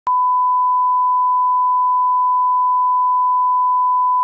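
Steady 1 kHz reference test tone, the line-up tone that accompanies colour bars, starting with a brief click just after the start and holding one unchanging pitch.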